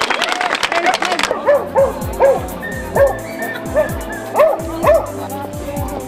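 Crowd applause that stops about a second in, followed by a series of short dog barks and yips over background music with a regular beat.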